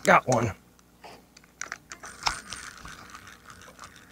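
A man's short two-part exclamation, falling in pitch, then scattered light clicks and rattles of a fishing rod and reel being handled in a small boat.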